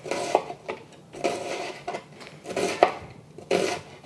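A chef's knife slicing through an onion on a cutting board. Each stroke is a crisp crunch through the layers, ending in a light tap of the blade on the board. There are about six slices at a slow, even pace.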